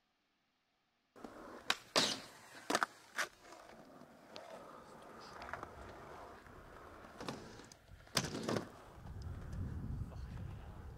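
Skateboard on concrete: wheels rolling, with sharp clacks of the board hitting the ground. The sound starts after about a second of silence, with four clacks in quick succession around two to three seconds in and two more about eight seconds in. A low rumble builds near the end.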